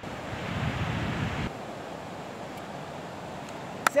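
Wind buffeting the microphone with a low rumble for about a second and a half, then an abrupt change to a steady wash of ocean surf breaking on the beach.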